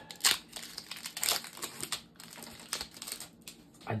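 Foil booster-pack wrapper crinkling as it is opened, in irregular rustles and crackles. The loudest comes about a quarter second in.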